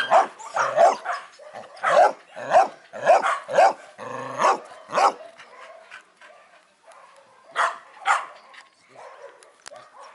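A dog barking in quick short barks, about two a second, with one longer drawn-out note just after four seconds in. After about five seconds it eases off, leaving two more barks near eight seconds.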